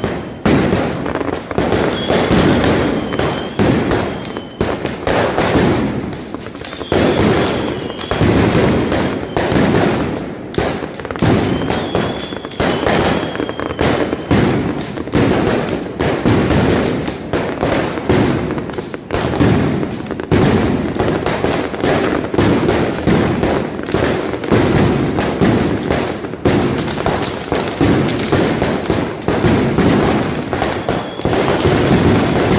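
Mascletà: a dense, unbroken barrage of ground-level firecrackers (masclets) banging in rapid strings, loud throughout. A faint high whistling tone comes and goes a few times in the first half.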